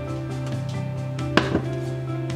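Two quick knocks of a metal spoon against a stainless-steel mixing bowl, about a second and a half in, over steady background music.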